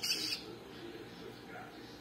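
A short, harsh squawk from a hand-fed downy waterbird chick right at the start, then only faint room sound.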